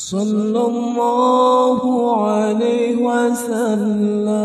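Unaccompanied sholawat: a single voice chants an Arabic devotional line to the Prophet Muhammad in long, drawn-out melismatic notes, with no instruments. The phrase starts abruptly, steps down in pitch about halfway, and wavers in quick ornamental turns near the end.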